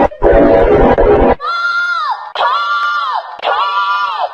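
Distorted, pitch-shifted audio typical of a 'G Major' meme edit: a loud, harsh blare for about the first second and a half, then a run of held, vocal-like high cries, each under a second long, that slide down in pitch as they end, about one a second.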